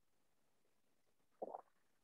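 Near silence, broken once about one and a half seconds in by a short, faint low sound.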